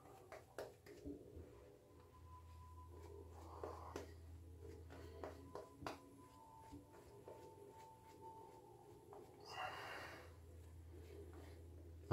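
Near silence: faint soft scratches of a shaving brush working lather over the face, with faint music in the background and a low steady hum.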